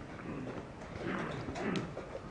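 Chess pieces knocking onto the board and a chess clock being slapped during a fast blitz game: a few short, sharp clacks, the sharpest near the end.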